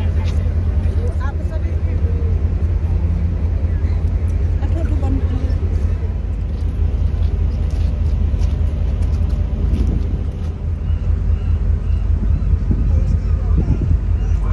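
Loud, steady low rumble of a ferry's open deck, with passengers' voices faint in the background.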